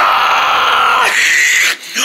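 A voice giving one long, loud, raspy scream, lasting about a second and a half and growing shriller toward its end before it cuts off: a cheer of victory.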